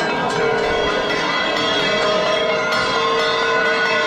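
Many metal bells ringing together continuously, a dense mix of overlapping ringing tones, over a crowd.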